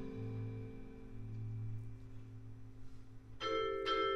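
Vibraphone chords ringing out and slowly fading over a held low bass note in a quiet jazz passage, with a new vibraphone chord struck about three and a half seconds in.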